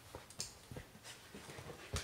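A Kelpie rolling on its back on a leather sofa while mauling a plush toy: dog sounds mixed with a string of short, irregular scuffs and thumps, the loudest thump near the end.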